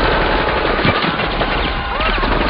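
Dense, continuous rapid gunfire, overlapping bursts of automatic fire.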